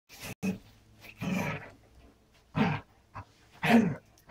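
An animal vocalising in short bursts, about six of them in quick succession, with a person saying "Oh" near the end.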